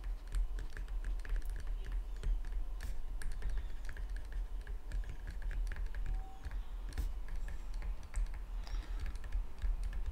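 Pen stylus tapping and clicking against a tablet screen in short, irregular strokes while handwriting, over a steady low hum.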